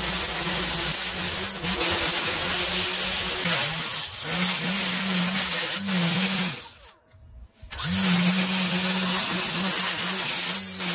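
Gas-powered bike-handle string trimmer running at high speed, cutting through tall overgrown grass, with a few short dips in engine speed. The sound drops out for about a second near three-quarters of the way through, then returns at full speed.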